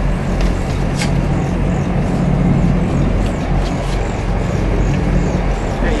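A boat engine running steadily, a low drone under a wash of wind and water noise, with a single sharp click about a second in.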